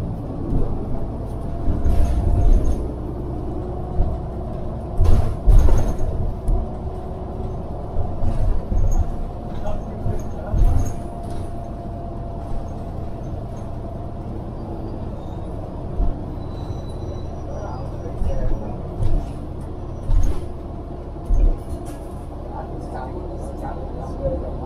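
Inside a moving city transit bus: steady low engine and road rumble, with knocks and rattles of the body over bumps in the road. A faint steady whine runs through the first half.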